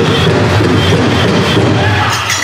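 Powwow drum group singing over a steady big-drum beat, with the metal cones of jingle dresses rattling from the dancers.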